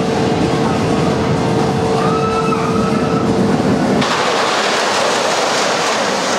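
Boomerang roller coaster train running along its steel track: a steady rumble with a held whine. About four seconds in it gives way abruptly to an even hiss.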